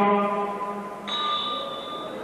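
Boxing ring bell struck once about a second in, its high clear tone ringing on. Before it, a steady pitched tone fades away.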